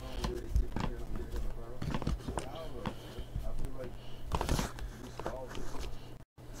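Clicks and knocks of an aluminium case being handled as its lid is lifted open, under faint voices.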